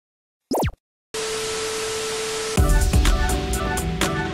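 Programme intro sound effects: a short, steeply falling zip, then an even static hiss with a steady low tone under it, then upbeat theme music with a drum beat about two and a half seconds in.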